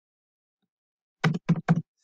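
Three quick keystrokes on a computer keyboard, about a fifth of a second apart, in the second half.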